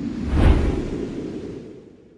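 A whoosh sound effect over a deep low boom, swelling quickly to a peak about half a second in and then fading away over the next two seconds.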